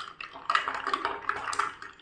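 Metal spoon stirring an iced sattu drink in a glass mug: liquid swishing, with a quick irregular run of clinks of the spoon against the glass and the ice cubes.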